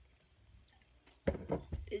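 Low room tone, then about a second and a quarter in a sudden sharp sound, followed by a boy's voice starting to speak.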